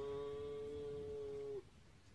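A man's long hummed 'nnnn' held on one steady pitch, stopping abruptly about a second and a half in.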